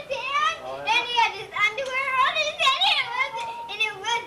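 Young children talking and calling out in high-pitched voices, the words unclear.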